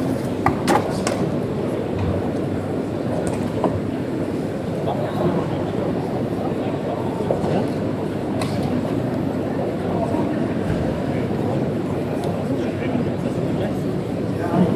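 Steady crowd chatter in a large arena, with a few sharp smacks standing out, the strongest about a second in.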